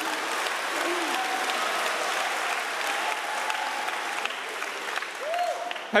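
A theatre audience applauding steadily, with a few voices heard through the clapping. The applause eases near the end as a man starts to speak.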